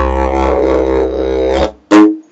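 Didgeridoo made from a washed-up piece of river driftwood, playing a steady low drone with shifting overtones. The drone stops about three-quarters of the way through, followed by one short loud blast at the very end.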